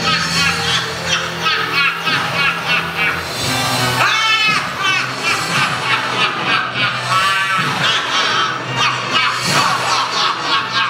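Show soundtrack played over the theatre speakers: music with many short, shrill, arching calls repeating quickly, like squawks or honks.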